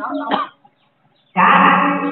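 A singing voice over music, broken by a silence of almost a second near the middle before the singing comes back loudly.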